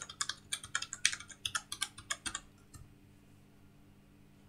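Computer keyboard typing: a quick run of about a dozen light keystrokes that stops a little under three seconds in.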